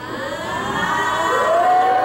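A voice in one long, drawn-out cry that rises in pitch and then holds.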